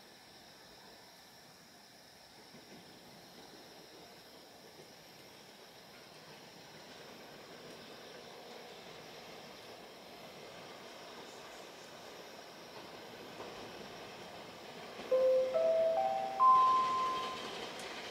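A train approaching, a faint rumble that slowly grows louder. About fifteen seconds in, a station chime of four short notes stepping upward rings out over it: the platform's signal that a train is about to arrive.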